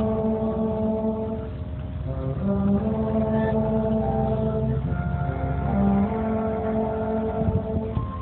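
Symphony orchestra playing a slow passage of long held chords that change every second or two.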